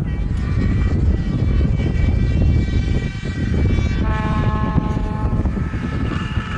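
Subaru Impreza rally car's engine running hard on approach, a steady high engine note that drops clearly in pitch about four seconds in as the revs fall, then climbs again near the end.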